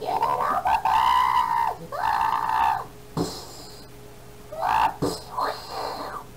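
A man's voice making monster-like growls and groans without words: two long, drawn-out ones in the first three seconds, then shorter grunts in the second half, over a faint steady hum.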